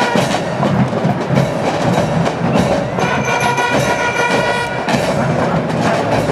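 Marching band playing: a dense, steady drum beat, with held chords of a melody instrument coming in about halfway through.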